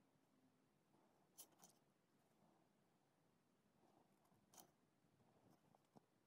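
Near silence: room tone with a few faint clicks from the tip of a silicone-tipped rubber clay tool touching the polymer clay and the work surface. Two clicks come close together about a second and a half in, another past four seconds, and one near the end.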